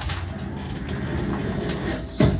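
Intro of a hip-hop instrumental backing track playing through the room's speakers: a steady, hazy sound with a low rumble and no clear beat yet.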